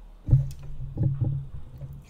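Microphone handling noise as the mic and its pop filter are moved by hand: a loud bump about a quarter-second in, then a few more knocks and rubbing.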